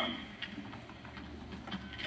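Low steady hum of the room and sound system, with a few faint clicks and rustles as a Bible and papers are handled at the pulpit microphones.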